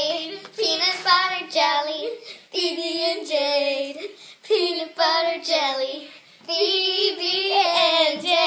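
Young girls singing in held phrases about a second long, with short breaks between them.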